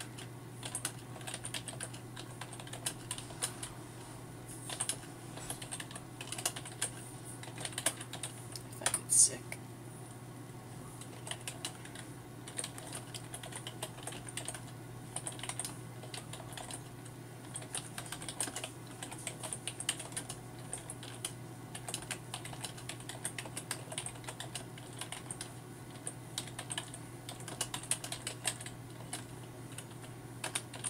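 Typing on a computer keyboard: irregular runs of key clicks, with one louder clack about nine seconds in, over a steady low hum.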